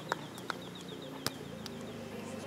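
A bird's rapid high trill of short, evenly repeated notes over steady low background noise, with a few sharp clicks in between.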